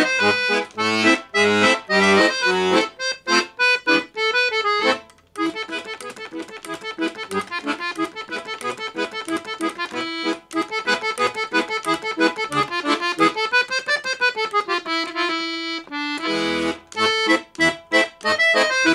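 A Paolo Soprani piano accordion played solo. Fast treble runs over bass-button notes, a short break about five seconds in, then quick running notes, a held note and loud chords near the end.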